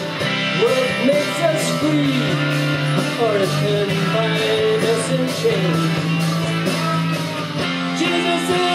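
Rock music with electric guitar: a lead line bending notes over steady held bass and chords.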